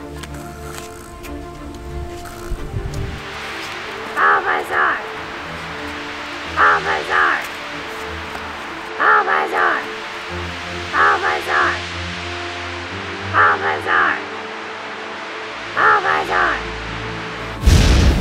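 Background music with a short three-syllable cartoon creature's call, Bulbasaur's cry, repeated six times about every two and a half seconds. Just before the end a loud sudden burst sounds as the Poke Ball lands and catches it.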